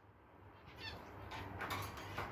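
Faint scratching and rattling of wire cage bars as an African grey parrot climbs from its perch onto the side of its cage, starting about a second in.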